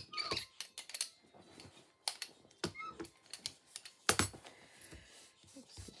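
Handling of a clear acrylic brayer and card on a cutting mat: scattered light clicks and taps, with one louder knock about four seconds in.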